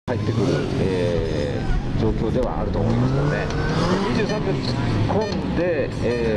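Yamaha WR450F single-cylinder four-stroke dirt bike engine revving up and down again and again as the rider works the throttle through tight turns on a gymkhana course.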